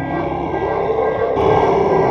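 A long, loud growling roar like a tiger's. It grows harsher about one and a half seconds in and dies away just after.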